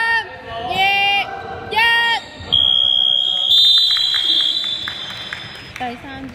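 Players shouting, one loud call about every second, then a long, steady, high-pitched buzzer for about two seconds, marking the end of the quarter.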